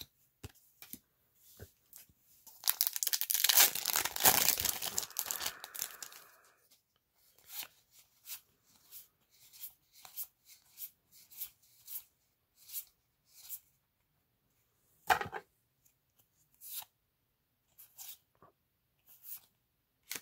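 A foil Magic: The Gathering booster pack torn open, a crinkly tearing that lasts about four seconds. Then a run of short, soft card clicks, about one and a half a second, as the cards are flicked one at a time through the hand, with one sharper snap near three quarters of the way through.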